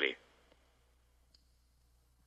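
A man's voice finishing a spoken line, then near silence: faint low room tone with one small click a little past halfway.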